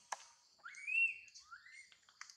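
Adult macaque giving two rising, whistle-like coo calls, the first higher and louder, the second shorter and lower, over a steady hiss of insects. A sharp click comes just before the calls.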